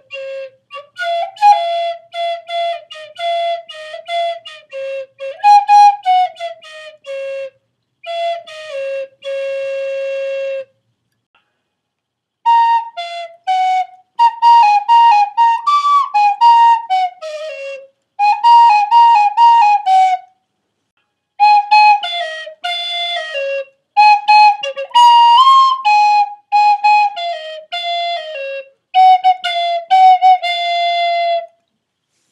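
A yellow plastic recorder playing a single-line melody of short, clear notes in phrases, with two breaks of silence.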